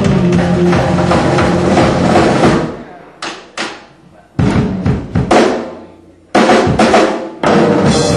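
Live electric guitar and drum kit playing loud rock. About two and a half seconds in they break off into a run of short stop-start hits with gaps between them, then come back in together near the end.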